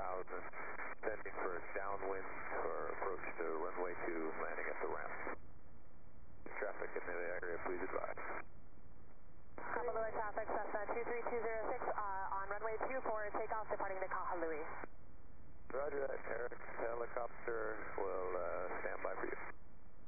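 Faint, narrow-band radio voice traffic, as over an aircraft headset: four transmissions with short gaps between them.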